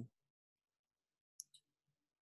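Near silence, broken by two faint short clicks close together about one and a half seconds in.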